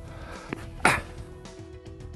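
A tennis ball struck by a racket in a forehand drive, one sharp loud hit a little under a second in, with a fainter knock shortly before it. Soft background music with long held tones plays underneath.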